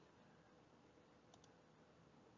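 Near silence: room tone, with two faint, quick clicks about one and a half seconds in.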